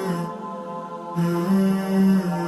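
Closing music: a single voice chanting long held notes that step between pitches. It fades for a moment about a third of the way in, then swells back on the next note.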